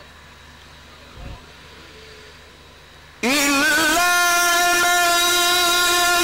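Faint room murmur with one soft thump, then about three seconds in a Quran reciter's amplified voice comes in loud with a short upward slide and holds one long, steady note.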